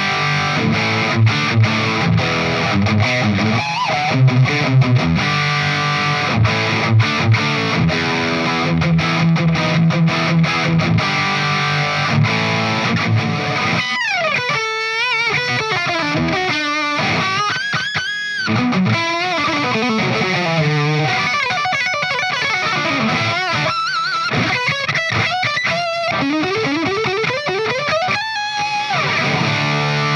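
Charvel Pro-Mod Relic San Dimas electric guitar played through a distorted amp, unaccompanied noodling. For about the first half it is chugging rhythm riffs; then come lead lines with string bends, vibrato and fast runs.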